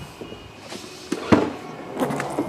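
Volkswagen Touareg tailgate being released and lifted, with a short latch clunk a little past halfway.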